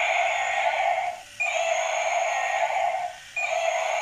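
Battery-powered walking triceratops toy playing its built-in electronic sound effect: the same buzzy clip of about a second and a half, each beginning with a short high beep, repeating about every two seconds with brief breaks between.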